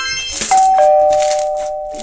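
A two-tone "ding-dong" doorbell chime: a higher note, then a lower note held and slowly fading. A short bright chime sounds just before it.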